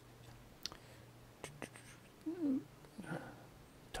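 Quiet room with a low steady hum, a few faint clicks, and one brief, faint wavering pitched sound about halfway through.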